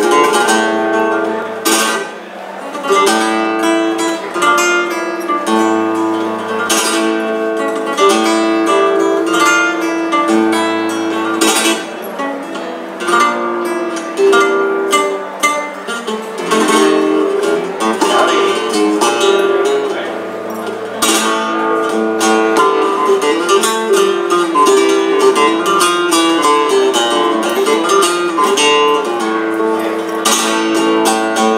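Flamenco guitar playing tientos, mixing picked melodic runs with sharp rasgueado strums.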